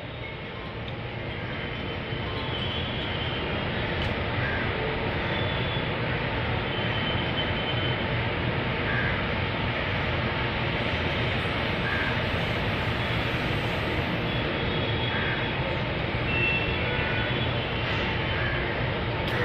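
Steady background noise, a low rumble and hiss, fading in over the first two seconds, with a few faint short high chirps now and then.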